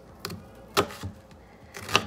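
Kitchen knife slicing through a halved onion on a cutting board: a few separate knocks of the blade meeting the board, the loudest near the end.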